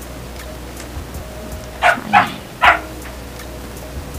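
A dog barking three quick times, about two seconds in.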